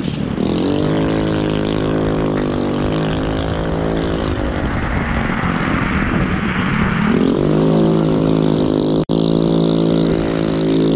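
A vehicle motor running throughout, its pitch dropping a little after four seconds in and climbing again about seven seconds in as the speed changes, with a rushing noise in between. The sound cuts out for a split second near the end.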